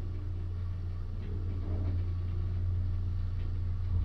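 A 1991 Mitsubishi Elepet Advance V rope-traction passenger elevator travelling down, heard from inside the car as a steady low hum and rumble.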